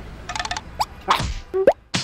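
Cartoon sound effects: a quick patter of small clicks, then short plops and brief rising tones, ending on a sharp click.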